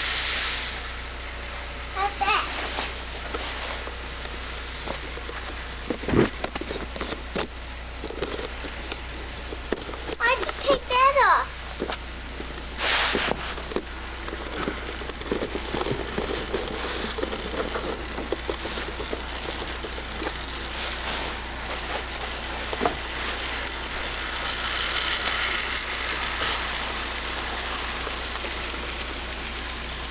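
Toy train running around its oval track, a steady hissing whir from its small motor and wheels, broken by a few sharp knocks.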